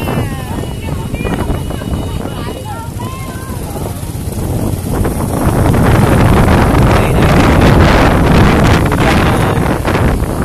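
Street sound: voices of people nearby in the first few seconds, then, from about five seconds in, a loud rushing rumble of wind on the microphone mixed with motorbike traffic.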